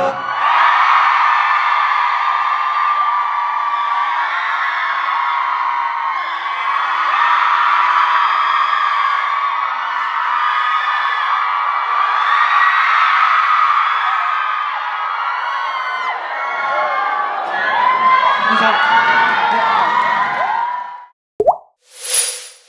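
Studio crowd of fans cheering and screaming in many high voices once the song's music stops. It cuts off suddenly near the end with a brief swoosh.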